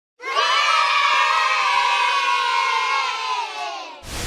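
A group of children cheering together in one long shout, starting sharply a moment in and fading out near the end.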